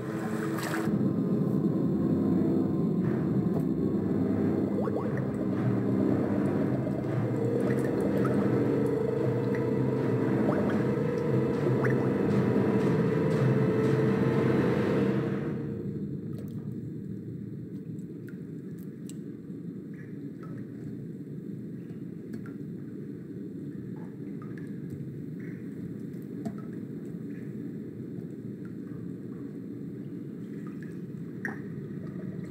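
Film score and water sound design: a dense, low, droning musical bed for about fifteen seconds, then the high end cuts out suddenly, leaving a muffled low rumble like sound heard underwater, with a few faint drips.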